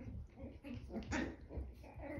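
Ten-week-old chihuahua puppies vocalizing as they play-fight: a string of short, high little calls, loudest a little past the middle.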